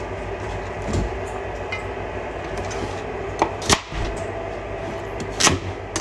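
A few sharp knocks, mostly in the second half, from a chef's knife cutting through carrots onto a plastic cutting board. A steady low hum runs underneath.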